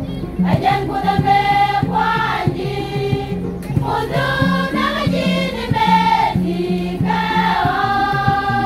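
Women's choir singing a gospel song in Nuer, in phrases of several voices together. Underneath runs a low repeating bass part with a regular beat.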